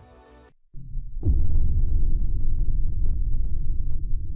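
Background music cuts off half a second in. A loud, deep rumbling transition sound effect follows, with a quick falling sweep as it swells, and runs on steadily.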